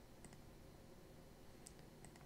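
Near silence: room tone with two faint computer mouse clicks, one shortly after the start and one near the end.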